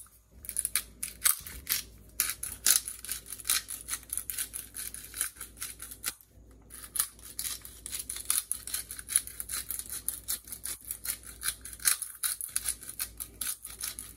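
Hand-held pepper mill grinding black pepper, a fast run of gritty clicks that pauses briefly about six seconds in.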